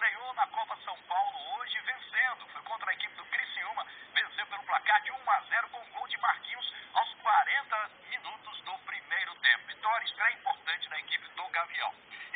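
Only speech: a man reporting continuously in Portuguese, thin and tinny with no low end, like sound heard through a phone.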